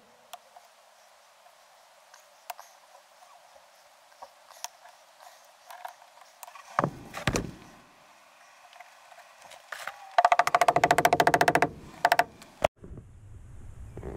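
Pliers working through a thick rubber door seal: faint scattered snips and clicks, a low thud about seven seconds in, then a loud, fast buzzing rattle for about a second and a half around ten seconds in, and a sharp click after it.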